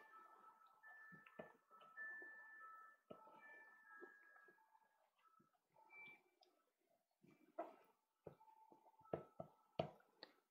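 Near silence, with scattered faint taps and strokes of a soft pastel stick on pastelmat paper, a few clearer taps near the end.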